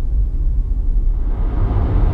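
Road noise inside a Nissan Leaf electric car's cabin: a steady low rumble, with tyre and wind noise growing louder a little over halfway through as the car runs at motorway speed, about 120 km/h.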